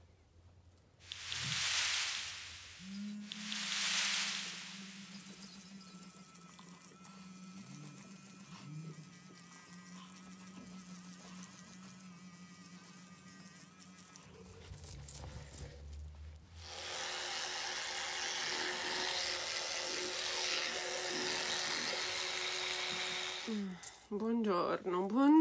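Water splashing twice, then a FOREO Luna Mini 3 sonic facial cleansing brush buzzing with a steady low hum for about ten seconds while cleansing the face, then water running from a tap for rinsing near the end.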